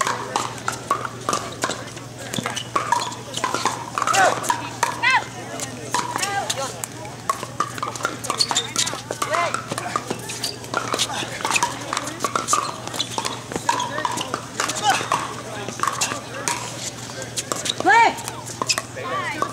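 Pickleball rally: repeated sharp pocks of hard paddles striking a plastic ball at irregular intervals, with voices in the background and a low steady hum.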